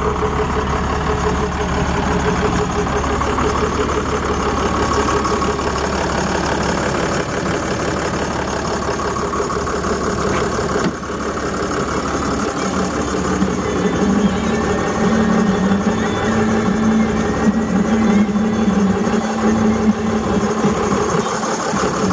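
2007 Ford LCF's 4.5-litre Power Stroke V6 diesel engine idling steadily. A steady low hum joins in during the second half.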